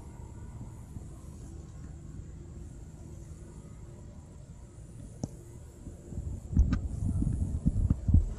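Faint steady low background hum, with a couple of faint clicks; in the last second and a half, irregular low rumbling buffets on the microphone.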